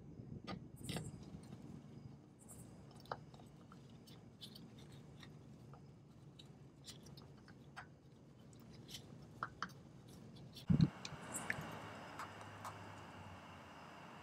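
Faint scattered clicks and scraping of a gloved hand screwing a new spin-on oil filter onto its mount under the engine, then a single low thump about three-quarters of the way through.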